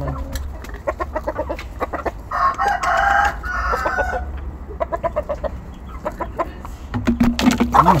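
A rooster crows once, a call of about two seconds starting a little over two seconds in, with short chicken clucks before and after it.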